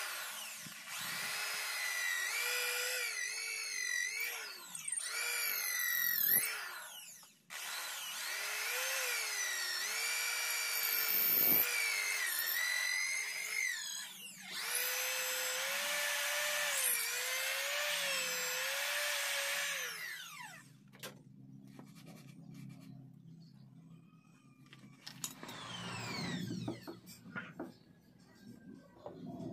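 A corded electric hand drill runs as it bores into a small piece of wood. Its motor whine rises and falls in pitch with trigger and load, cuts out briefly about seven seconds in, and stops about twenty seconds in, leaving fainter rubbing and handling sounds.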